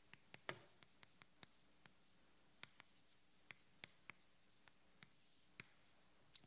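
Chalk writing on a chalkboard: faint, irregular sharp taps and short scrapes as a few characters are written by hand.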